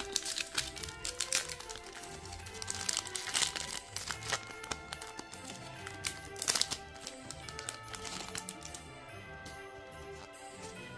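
Background music, with a foil Pokémon booster-pack wrapper crinkling now and then as it is handled, loudest about six and a half seconds in.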